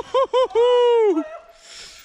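A man's high-pitched cry of alarm, 'whoa': two short yelps, then one long call that falls away a little over a second in. It is a reaction to a jump landing in which the rider's feet slipped off his pedals.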